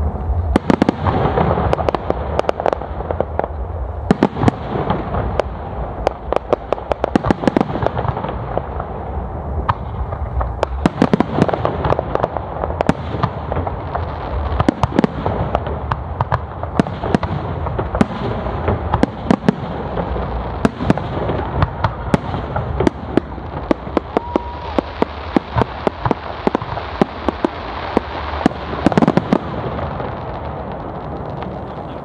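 Professional aerial fireworks display: shells bursting one after another with many sharp bangs over a continuous rumble, the bangs crowding into a dense cluster near the end.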